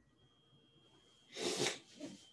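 A person sneezing once: a faint breath in, then a short, loud burst about a second and a half in.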